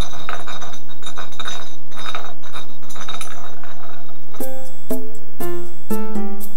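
A glass bottle spinning and rattling on a hard floor, a dense run of clinks for about four seconds. Then music starts, one pitched note about every half second.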